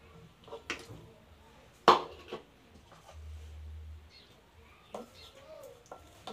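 Knocks and clatter as ingredients are tipped from a plastic bowl into a glass blender jar. A handful of sharp knocks, the loudest about two seconds in.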